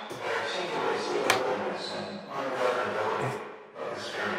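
A spoken-word sample run through the Erica Synths Pico DSP's saturated reverb: a washed-out, smeared voice with a long reverb tail, its tone randomly modulated by CV, sounding like an old radio broadcast. A single sharp click about a second in.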